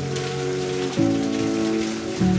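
Water splashing as a rope-hauled bucket dips into a well and is drawn up full, under soft ambient music with held chords that shift about a second in.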